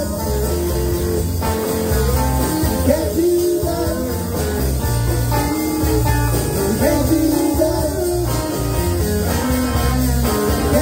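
Live rock and roll band playing an instrumental break: electric guitar lead lines with bending notes over bass guitar and drums.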